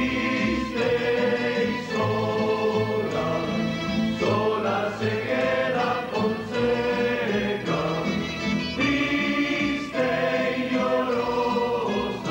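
A tuna, a traditional Spanish student music group, singing together in chorus, the voices holding notes that change about once a second.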